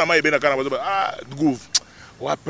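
A man speaking forcefully in short phrases, with a brief click near the end.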